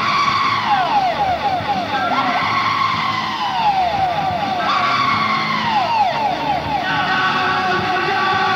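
Live rock band playing a noisy passage, with a quick run of short falling pitch glides, several a second, over sustained held notes, on an old recording with no high end.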